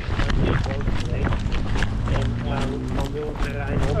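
Running footsteps on asphalt, then grass, with the camera jolting at each stride and a low rumble of handling and wind on the microphone.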